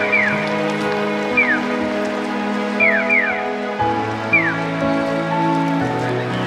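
Electronic bird-chirp tones of a Japanese pedestrian crossing signal for the visually impaired. Single falling 'piyo' chirps are answered by quick runs of two or three, which means the crossing is open to walk. Behind them runs music of long held chords that change about four seconds in and again near the end.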